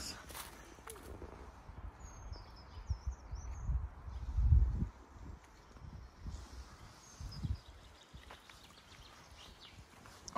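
Woodland ambience: faint bird chirps about two to three and a half seconds in and again near seven seconds, over irregular low rumbles of wind buffeting the microphone and footsteps on a forest path.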